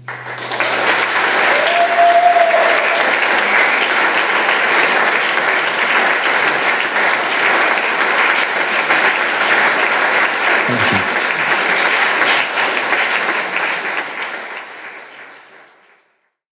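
Live concert audience applauding after the song ends, with a brief whoop from the crowd about two seconds in. The clapping tapers off over the last couple of seconds.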